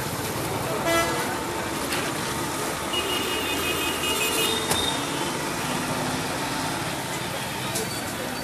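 Street traffic and crowd voices, with vehicle horns: a short toot about a second in and a longer, higher-pitched horn from about three seconds.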